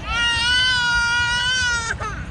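A young child lets out one long, high-pitched cry of about two seconds, holding an even pitch before it breaks off.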